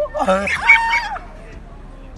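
A loud rooster-style cock-a-doodle-doo crow, about a second long, climbing to a held high note and dropping away at the end.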